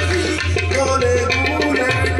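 Qawwali music played without singing: tabla drumming in a quick, steady rhythm under a wavering melody, with a steady low hum underneath.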